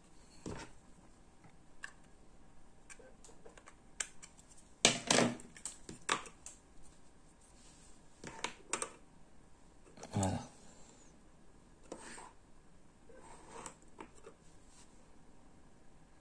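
Scattered light plastic clicks and taps from handling a small wireless door contact sensor, its magnet piece moved against the sensor body, with the loudest knock about five seconds in.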